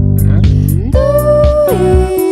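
Pop band music: electric guitar over a drum machine beat and a low bass line, with a woman's voice sliding up to a held note about a second in and dropping near the end.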